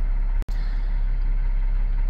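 The 3.0-liter V6 of a Ford Escape with a newly fitted throttle body, idling, heard from inside the cabin as a steady low rumble. The sound drops out for an instant about half a second in.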